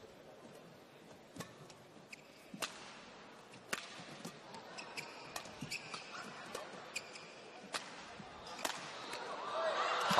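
Badminton rally: sharp racket strikes on the shuttlecock roughly once a second, with short squeaks of shoes on the court. Crowd noise swells near the end as the rally finishes.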